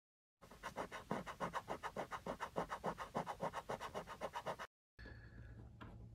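A coin scratching a lottery scratch-off ticket in rapid back-and-forth strokes, about five a second. The scratching cuts off suddenly about a second before the end.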